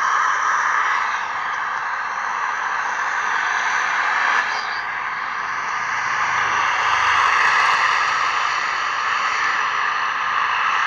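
Steady road and wind noise heard from inside a moving vehicle. It grows a little louder around six to eight seconds in, as a bus passes close alongside.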